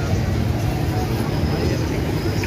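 Steady low rumble of background noise with faint voices in it.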